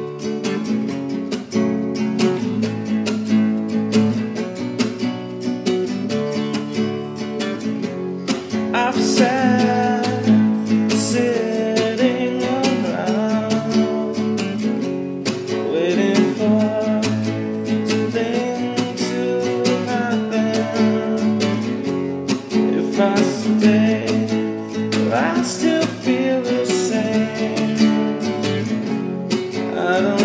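Acoustic guitar strumming chords steadily. From about nine seconds in, a wordless melody line glides over the chords.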